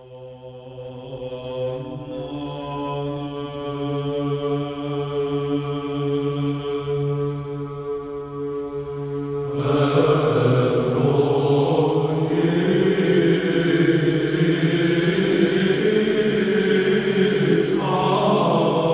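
Orthodox church chant: a single held drone note swells up, and about nine seconds in the chanted melody enters over it, fuller and louder.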